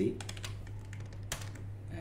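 Computer keyboard typing: a few scattered keystrokes, with one sharper click about 1.3 s in, over a steady low electrical hum.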